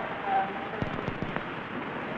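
Steady hiss with scattered crackles and clicks, the kind of background noise heard on an old film soundtrack.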